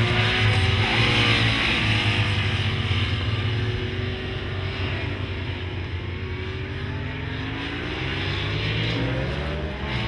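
Racing motorcycle engine at speed on a circuit. Its pitch falls as it passes early on, then climbs again near the end as it accelerates.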